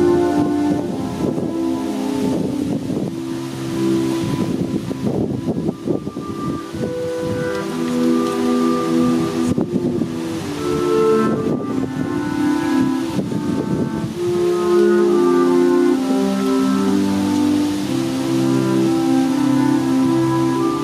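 Concert wind band playing held chords in brass and woodwinds. Dense rapid short strokes run under the chords for the first few seconds and again around the middle.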